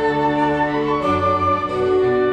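Orchestra playing classical music, with the violins bowing sustained notes; about a second in the chord changes and the bass notes come in stronger.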